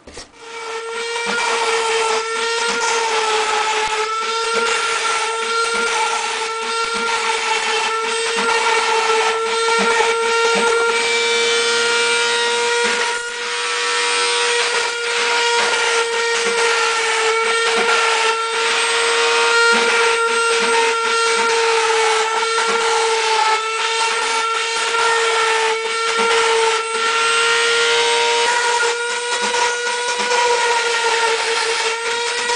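Router spindle of a Phlatprinter MKII foam-cutting CNC machine whining at a steady pitch as it cuts a foam sheet, with the hiss of the bit through the foam. It starts right at the beginning and builds over the first second or two, then runs with only slight dips in pitch as the load changes.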